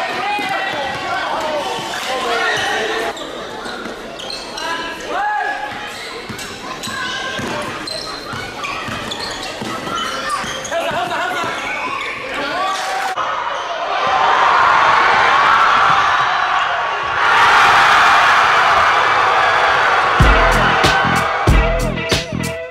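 Live gym audio of a pickup basketball game: a basketball bouncing on a hardwood court and players' voices shouting. A loud burst of cheering and noise from the gym comes in about two-thirds of the way through, and a hip-hop instrumental with a heavy bass beat starts near the end.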